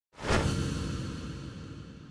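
Logo-intro sound effect: a whoosh about a quarter-second in that trails off into a long, slowly fading low rumble.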